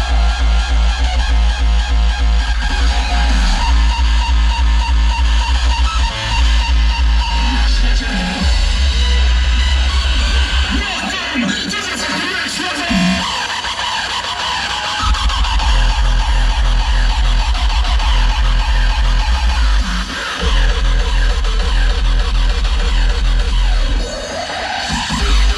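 Hardstyle DJ set played loud through a festival sound system, driven by a heavy, distorted kick drum. The kick and bass drop out for a few seconds about halfway through, then come back in.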